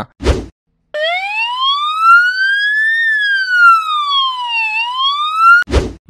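A siren sound effect wailing for about five seconds: one slow rise in pitch, a fall, then a rise again before it cuts off. A short burst of noise comes just before it and just after it.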